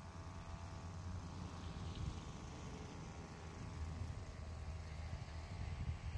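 Motorized backpack crop sprayer's small engine running steadily at a distance, a faint hum, over an uneven low rumble.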